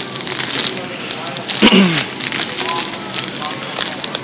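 Crackling and rustling of close handling near the phone's microphone, with scattered clicks, over the murmur of a busy store.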